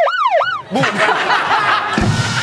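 A siren-like sound effect swooping up and down in pitch about three times in quick succession during the first second, then giving way to laughter and chatter.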